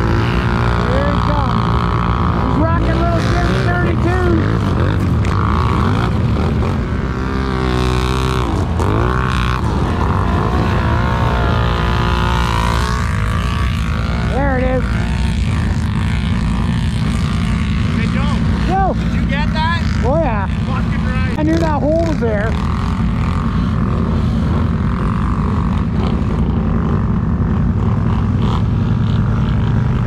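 ATV engine running steadily close by, with other ATVs revving across the field, their engine pitch rising and falling in repeated swells.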